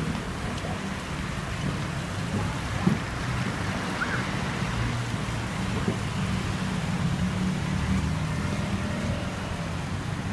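Steady outdoor noise of road traffic, a low continuous hum with a few faint brief sounds on top.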